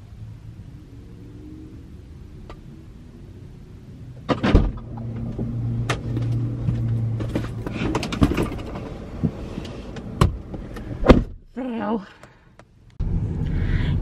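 Someone getting into a parked car: a loud knock about four seconds in, then rustling, clicks and knocks inside the cabin, and a sharp thump a little after eleven seconds, like a car door shutting.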